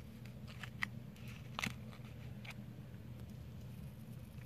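A few faint clicks and crinkles of a clear plastic coin holder being handled and set down, over a low steady hum.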